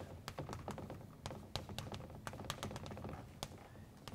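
Chalk writing on a blackboard: quick, irregular taps and short scrapes of the chalk as a word is written out.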